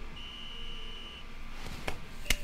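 A volleyball referee's whistle in the anime's soundtrack, one steady high blast about a second long.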